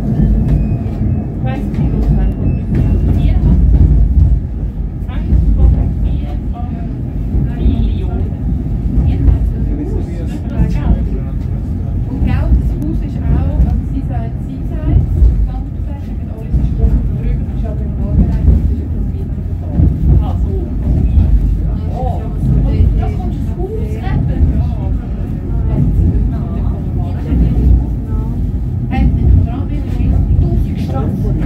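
Steady low rumble inside a Stoos funicular cabin as it climbs the track, with passengers' voices murmuring faintly over it.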